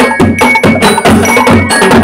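A drum and lyre band playing: snare, tenor and bass drums beating a fast, even marching rhythm with cymbal hits, and high ringing bell-lyre notes over the drums.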